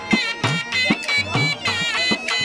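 Live folk dance music: a dhol drum beating a steady rhythm of about two to three strokes a second, with deep bending bass strokes, under a shrill, high reed pipe melody.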